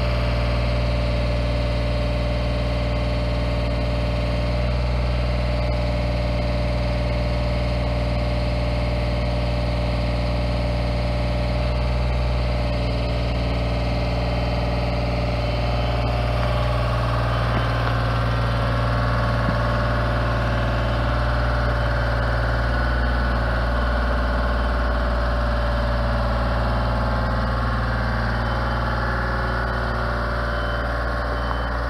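Genie articulating boom lift's engine running steadily while its hydraulic boom and platform are moved. About halfway through, a higher whine joins in over the engine.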